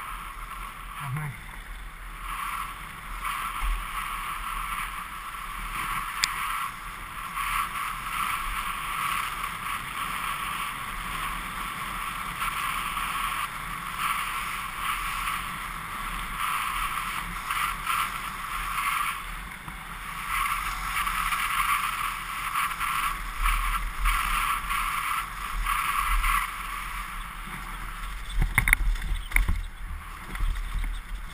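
Morewood Makulu downhill mountain bike rolling fast down a gravel forest road, heard from a helmet-mounted camera: a steady rolling rush of tyres and bike. Near the end it turns louder and rougher, with knocks, as the bike comes onto bumpy singletrack.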